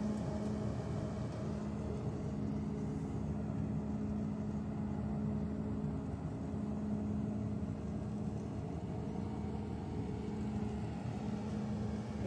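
Self-propelled grape harvester running as it works along a vine row: a steady machine drone with a constant hum.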